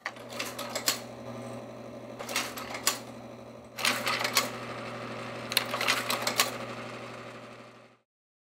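Kodak Ektagraphic carousel slide projector switched on: its fan motor hums steadily while the slide-change mechanism clacks through four cycles, each a short cluster of clicks, about every one and a half seconds.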